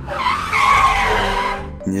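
A car's tyres screeching as it brakes hard, a loud skid lasting about a second and a half.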